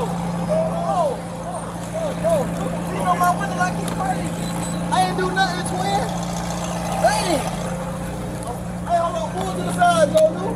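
Indistinct voices of people talking and calling out over a steady low hum of idling vehicles.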